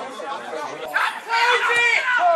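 Voices of several people near the microphone, talking and calling out over one another. The voices get louder and higher-pitched about a second in.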